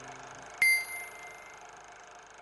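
A small bell struck once about half a second in, giving a bright, clear ding that rings out for about a second, over the last fading notes of the preceding music.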